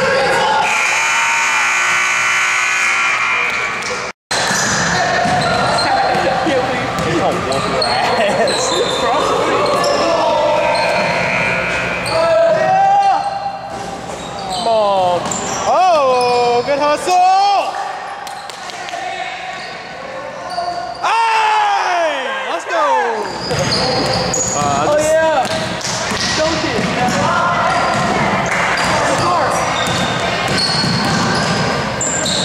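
A basketball being dribbled on a hardwood gym floor during a pickup game, with repeated thuds echoing in a large hall. Sneakers squeak on the court in clusters, most densely from about twelve to eighteen seconds in and again around twenty-two seconds.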